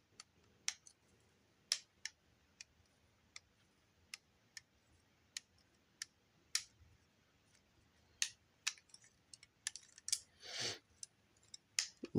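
Hard plastic construction-brick pieces clicking as they are handled and pressed together, in scattered sharp single clicks about one or two a second. A short breathy sound comes near the end.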